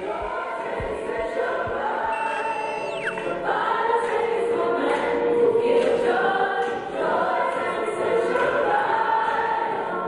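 Background music: a choir singing sustained notes, swelling louder about three and a half seconds in.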